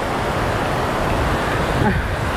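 Strong wind rumbling on the microphone over the steady wash of surf on a beach.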